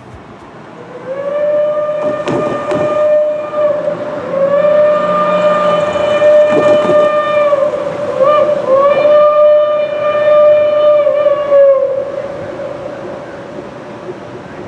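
Steam whistle of Reading & Northern T1 #2102, a 4-8-4 steam locomotive, blowing the grade-crossing signal: two long blasts, one short, then a long one, each steady in pitch.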